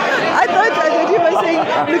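Several people talking over one another in chatter.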